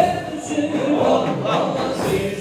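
A group of men chanting a Sufi zikr together, with large frame drums beating along.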